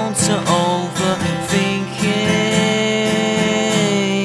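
Acoustic guitar strummed by hand. About halfway through, the strumming gives way to a chord left ringing under one long note held by a man's voice.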